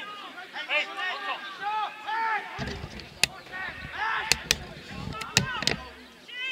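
Shouted calls from football players across the pitch, several voices overlapping, with about five sharp knocks in the second half and a low rumble from about two and a half seconds in.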